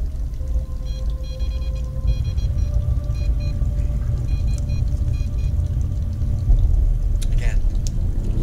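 Handheld EMF detector going off with short electronic beeps in several bursts, registering a field reading, over a steady low rumble on the microphone.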